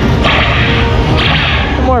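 Ride-vehicle laser blaster firing: two short, noisy electronic zap bursts about a second apart. Under them runs the low steady rumble of the ride and its soundtrack.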